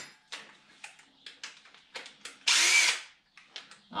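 Cordless drill running a stock motor mount bolt in, one short burst of about half a second, about two and a half seconds in. A few light clicks and taps of metal parts being handled come before it.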